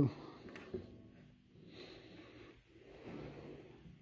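Quiet room with faint breathing close to the microphone and a small handling click just under a second in.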